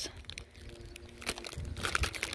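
Soft crinkling and crackling of a clear plastic bag of diamond painting drill packets as it is turned over in the hands, a few crackles coming in the second half.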